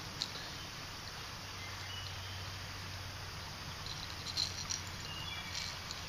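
Quiet outdoor ambience: a steady faint hiss with a low hum, short faint insect or bird chirps, and a few small clicks about four and a half seconds in.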